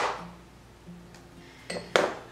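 Kitchen knife chopping cauliflower on the counter: one sharp chop with a brief ringing tail, a quiet stretch, then a couple of quick knocks near the end.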